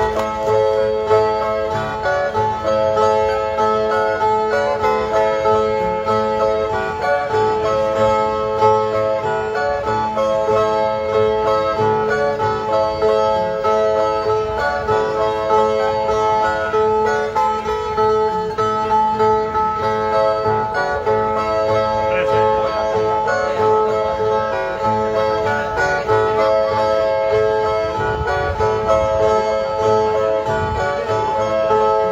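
Two steel-strung violas played together in a steady, repeating plucked figure with no singing: the instrumental viola introduction that opens a cantoria (repente) verse duel.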